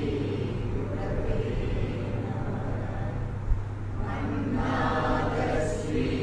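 Man's voice chanting an invocation in slow, drawn-out pitched phrases through a microphone, growing fuller from about two-thirds of the way in, over a steady low hum; a brief thump about halfway.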